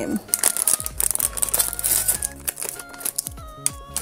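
Silver foil blind-box pouch crinkling and crackling in the hands as it is pulled and torn open, a dense run of sharp crackles. Light background music plays underneath.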